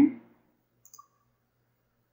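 A couple of faint computer mouse clicks about a second in, otherwise near silence.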